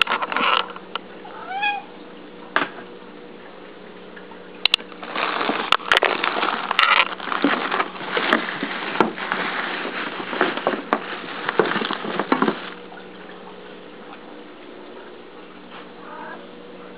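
A cat gives a short meow about two seconds in. From about five seconds until shortly before the end, plastic bags rustle and crinkle continuously as a hand rummages through them in a drawer.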